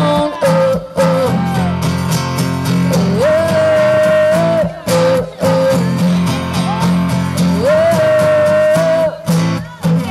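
Live amplified song: a woman singing over a strummed acoustic guitar. She holds two long notes, one about three seconds in and one about eight seconds in.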